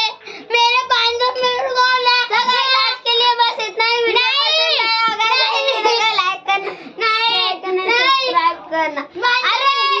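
Two children's high-pitched voices squealing and laughing without a break, shrill held cries that rise and fall in pitch.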